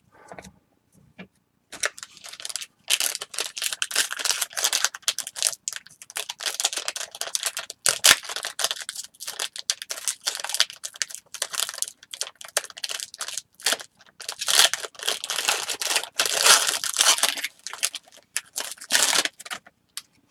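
A trading-card pack's wrapper being torn open and crinkled, then cards rubbing and sliding against each other as they are handled. The crackling starts about two seconds in and stops just before the end.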